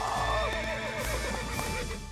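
A horse whinnying: one long quavering call that falls in pitch and dies away near the end, over background music.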